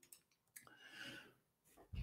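Near silence: room tone in a pause between speech, with a faint click about half a second in and a soft, short sound around a second in.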